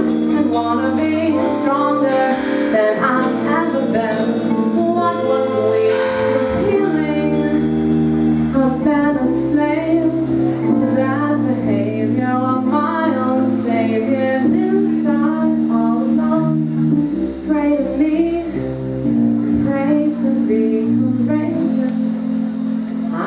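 Live jazz-funk band with a woman singing lead: her voice carries a wavering melody over sustained electric piano and guitar chords, an electric bass line and drums.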